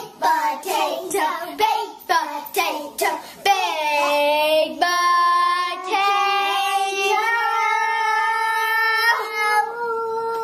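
A young girl singing on her own with no instruments. Short broken phrases come first, then from about four seconds in she holds long sustained notes.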